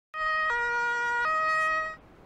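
Two-tone emergency siren of the German Martinshorn type: a steady high note, a longer lower note, then the high note again, each held without gliding, stopping just before speech begins.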